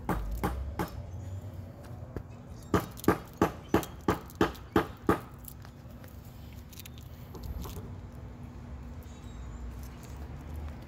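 A quick run of about seven sharp knocks, roughly three a second, over a low steady rumble.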